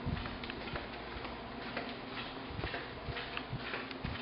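Footsteps on a hard, polished hallway floor: faint, irregular taps while walking.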